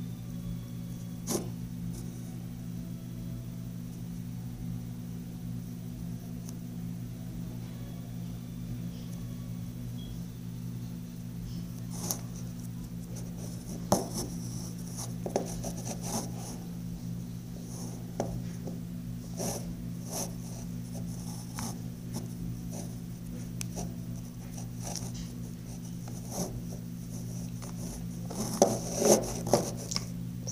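Slime being stretched and pressed by hand, giving scattered sticky clicks and crackles that grow busier in the second half and bunch together near the end, over a steady low hum.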